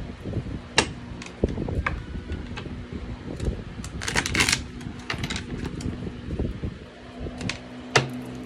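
Tarot cards being handled and shuffled over a wooden table: scattered taps and clicks, with a longer shuffling rustle about four seconds in.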